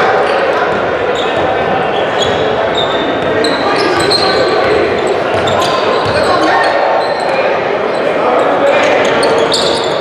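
Live basketball game sounds in a gym: a ball dribbling on the hardwood court, short high sneaker squeaks, and indistinct voices of players, coaches and spectators.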